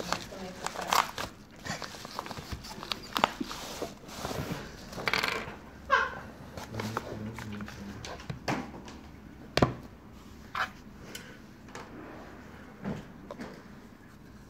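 Paper padded shipping envelope rustling and tearing as it is opened, then a cardboard phone box being handled and slid open, with scrapes and short taps on the table. There is a sharp knock about two-thirds through.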